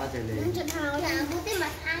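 A child's high voice, in short phrases that rise and fall in pitch.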